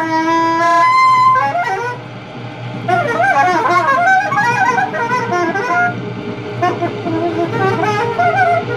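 Free-improvised live music: a soprano saxophone holds a steady note, then a dense tangle of warbling, sliding pitches takes over from about three seconds in, over a low steady hum.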